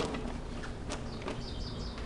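Light knocks and rustling of gear being pressed down and settled inside a hard plastic Pelican 1520 case, with a brief high chirping in the second half.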